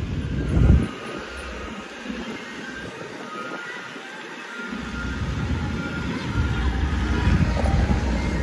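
Low rumble of the ice cream truck driving off, mixed with wind buffeting the phone microphone. The rumble drops away about a second in and builds back from about five seconds.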